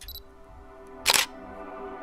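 Intro sound design: a single sharp camera-shutter-style click about a second in, over a sustained ambient music pad that grows louder toward the end.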